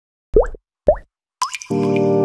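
Intro music sting: two short plops rising in pitch about half a second apart, then a third, higher one. A sustained chord sets in just before the end.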